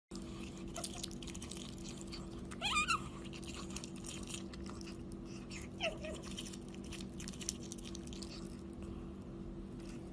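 A pet otter chewing corn kernels, with many small clicks throughout. A short, wavering squeak comes about three seconds in and a brief, lower one near six seconds, over a steady low electrical hum.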